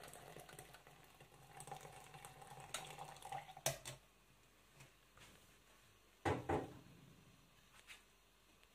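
Hot tea trickling faintly through a metal tea strainer into a steel mug, then a sharp metal clink and, a few seconds later, a louder double knock of metal cookware being set down.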